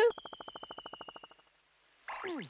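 Cartoon sound effect: a high electronic ringing tone with a rapid flutter, about twenty pulses a second, starting loud and fading out over about a second and a half.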